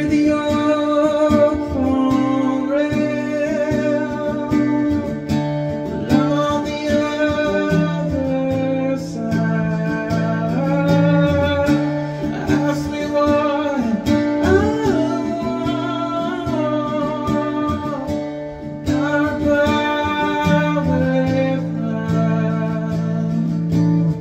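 A solo singer accompanying themself on a strummed cutaway acoustic guitar, singing a song with a steady guitar accompaniment throughout.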